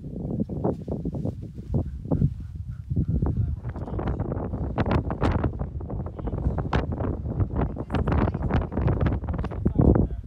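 Wind buffeting the microphone, heavy in the low end, with frequent short knocks and clicks over it; it gets louder about three seconds in.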